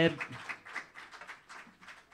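A man's voice breaks off at the start. Then comes faint, scattered hand-clapping from a small audience, several claps a second, dying away.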